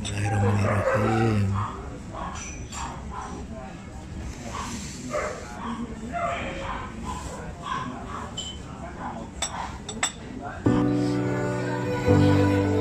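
Indistinct people talking, with a couple of sharp clicks near the end; shortly before the end, music with sustained bowed-string notes starts suddenly.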